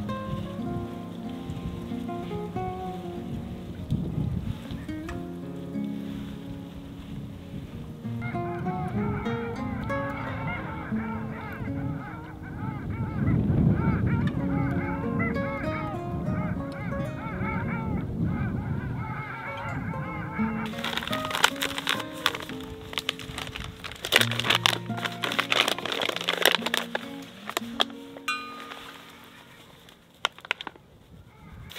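A flock of waterbirds honking and calling on open sea water, over background guitar music; the calls are thickest through the middle. Near the end comes a run of sharp rustling noises.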